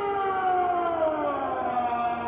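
A long dinosaur call from a film soundtrack: one pitched, horn-like tone that slides slowly and steadily down in pitch.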